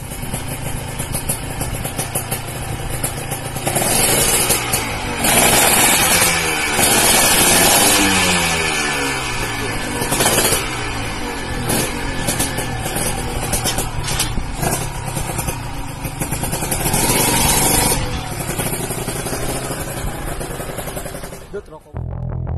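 Two-stroke Honda sport motorcycle engine revving, its pitch rising and falling repeatedly, loudest in the first half and again briefly later on.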